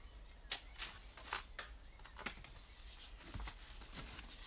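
Faint handling sounds: a few light ticks and rustles as the split cane supporting a potted show leek is worked free from the plant and its foliage.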